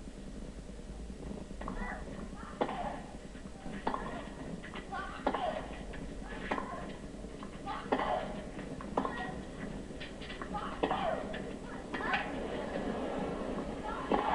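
Tennis rally on a clay court: about ten racket strikes on the ball in turn, roughly one every second and a bit. Some shots come with short grunts of effort from the players.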